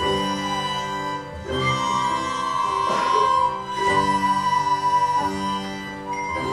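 A children's flute ensemble playing a slow passage of held notes, the chords changing about once a second with a high melody note held over them.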